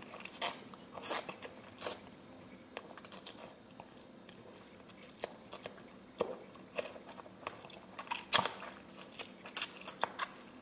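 A person chewing and slurping mouthfuls of lo mein noodles close to the microphone: irregular wet mouth clicks and smacks, with a louder one about eight seconds in.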